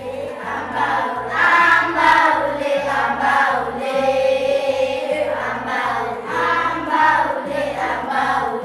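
A group of schoolchildren singing together as a choir, holding sustained notes.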